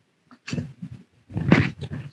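Short, irregular handling noises and brief grunt-like vocal sounds as a man pulls the strap of an emergency escape breathing device case over his head, starting about half a second in and loudest near the end.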